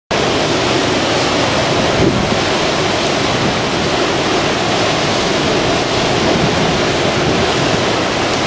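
Storm-force wind and driving rain make a loud, steady rushing noise, with gusts buffeting the microphone.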